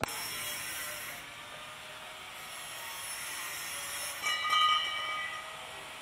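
Angle grinder cutting steel exhaust pipe: a steady rough, hissing grind, with a shrill, pitched squeal about four seconds in as the disc bites into the metal.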